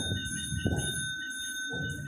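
A steady high ringing tone that stops just before the end, with a couple of dull low thumps under it.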